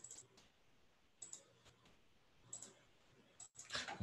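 Near silence with a few faint, short clicks spaced about a second apart.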